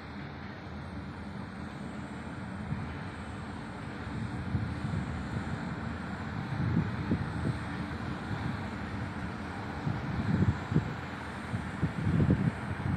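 Passing electric-hauled passenger train: a low rumble of its wheels on the track that grows louder, with irregular heavier knocks from the wheels in the second half.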